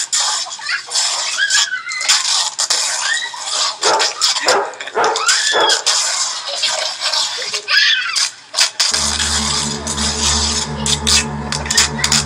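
A dog yelping and crying amid voices, in a rough, noisy recording played back from a phone video, with several rising-and-falling cries. About nine seconds in, music with sustained low tones comes in.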